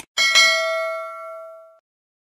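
Notification-bell 'ding' sound effect from a subscribe-button animation. A short click comes at the very start, then a bright bell chime is struck twice in quick succession and rings away over about a second and a half.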